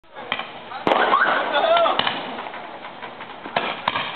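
Roman candles firing, a string of sharp pops about a second apart, with a voice calling out over them about a second in.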